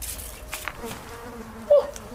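A steady insect-like buzzing drone held at one pitch, with a short, louder swoop about three-quarters of the way through.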